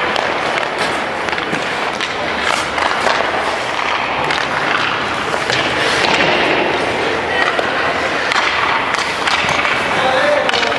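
Indoor ice-rink practice sounds: skate blades scraping the ice, with frequent short clacks of pucks and sticks, over an echoing arena background with distant voices.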